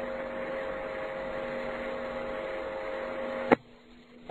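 Steady background hiss and hum of the recording, with faint steady tones under it. A sharp click comes about three and a half seconds in, after which the noise cuts out to near silence.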